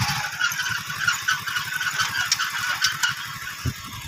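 Motorcycle engine running with a rapid, even pulsing while riding, mixed with wind noise on the microphone.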